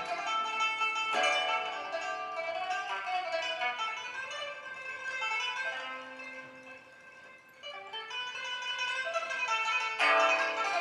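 Solo pipa, the Chinese pear-shaped lute, playing a plucked melody. It drops to a soft passage about six seconds in, then builds louder again toward the end.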